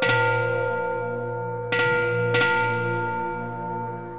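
Bells struck three times, once at the start and twice in quick succession a little under two seconds in, each strike ringing on and slowly fading, over a low steady drone.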